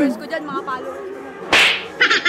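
A short, sudden whip-like swish about one and a half seconds in, typical of a transition sound effect laid over a zoom cut.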